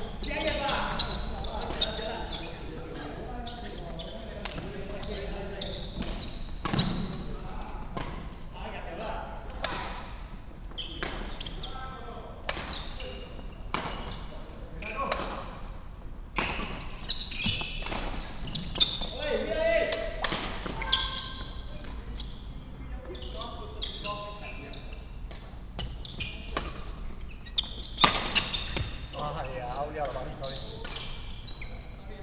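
Badminton rallies: sharp racket strikes on the shuttlecock, coming at irregular intervals, with players' voices calling out now and then between shots.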